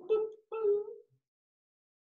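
Two short vocal sounds at a steady, fairly high pitch in the first second, the second slightly longer, then silence.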